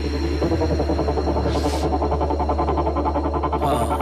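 Background music: a sustained low note under a fast, even pulsing pattern, with no speech.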